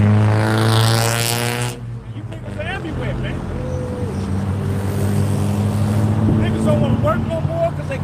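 A vehicle engine droning steadily at one pitch. For about the first second and a half a loud rushing noise sits on top of it, then cuts off suddenly, with faint voices later on.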